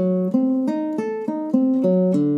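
Classical guitar playing single plucked notes, about three a second, stepping up and down in pitch. It is a beginner's left-hand finger exercise played one note per string, zigzagging back and forth across the strings.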